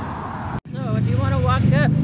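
Busy road traffic, with a vehicle engine rumbling and growing louder near the end, under a woman's talking. The sound drops out for an instant about half a second in.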